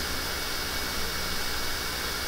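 Steady background hiss and hum of the recording setup, with a faint high steady whine, unchanging throughout.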